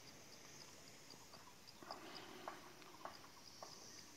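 Near-silent outdoor ambience with a faint insect chirping in an even, high-pitched pulse about two to three times a second, and a few soft clicks in the middle.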